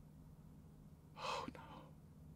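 A man's single short gasp, a sharp breath about a second in, over a faint steady low hum.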